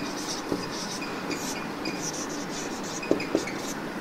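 Faint scratchy writing sounds over a steady room hum, with a few light knocks.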